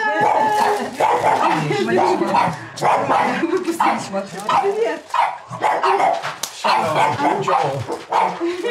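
A dog barking, with people talking at the same time.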